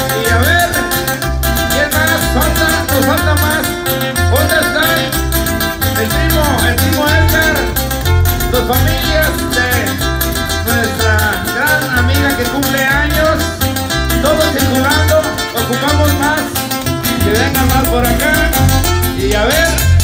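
A live band playing loud Tierra Caliente dance music, with a steady pulsing bass beat and a bending melody line over it.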